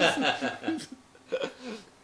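A man's speech ending a sentence, followed by a couple of short chuckles.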